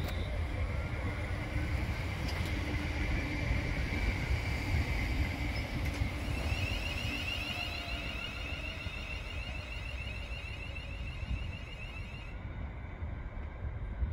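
Class 350 electric multiple unit pulling away from the platform, with a low rumble and a high electric whine from its traction equipment as it accelerates. The sound slowly fades as the train recedes, and the high whine stops about twelve seconds in.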